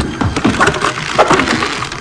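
Soundtrack of a slapstick film scene: music with a run of sharp knocks and cracks.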